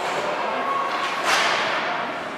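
Ice hockey play: a sharp crack of stick, puck or boards a little over halfway through, over the steady noise of skates on ice and the rink.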